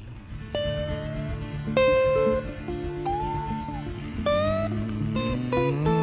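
Guitar music: single plucked notes, several of them sliding upward in pitch, over steady low accompaniment.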